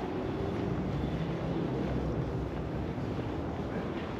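Steady low rumble of background noise in a large exhibition hall, with no single sound standing out.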